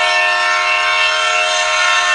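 A loud, steady horn-like chord of several tones, held unbroken.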